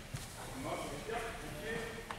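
Indistinct voices talking in a gymnasium, with two short sharp knocks, one just after the start and one about a second later.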